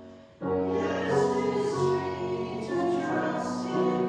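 A group of voices singing a hymn over sustained accompaniment, starting again after a brief pause about half a second in.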